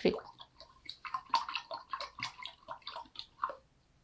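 A small plastic spoon stirring salt into a glass of water, clicking and scraping against the glass in quick, irregular strokes that stop about three and a half seconds in.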